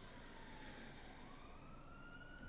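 A faint emergency-vehicle siren wail. Its pitch dips slightly, then climbs slowly and steadily, heard over quiet room noise.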